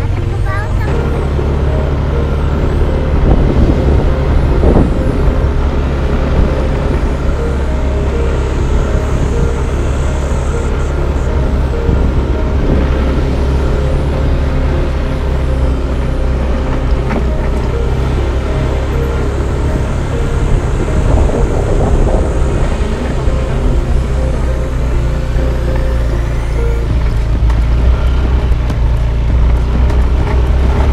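Motorcycle engine running steadily while riding up a rough dirt track, under a loud continuous low rumble.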